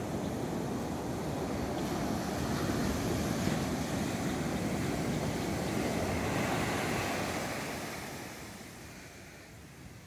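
Sea waves breaking and foam washing up a sandy beach. The surf swells through the middle and fades away near the end.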